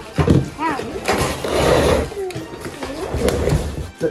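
Indistinct voices and short vocal sounds with no clear words, with a brief rustling noise about a second in.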